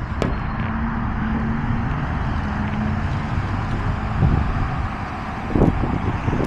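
Steady roar of road traffic from a nearby highway, with a faint steady hum over the first few seconds.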